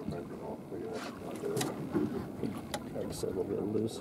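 Low, indistinct voices of people talking in the background, with a few sharp ticks scattered through.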